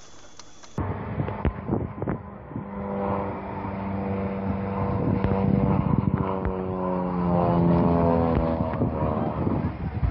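A small aircraft's engine droning overhead in one steady note that slowly sinks in pitch, with a few sharp knocks.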